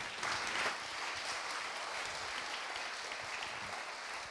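Audience applauding: steady clapping from a seated crowd that starts a moment in and holds at an even level.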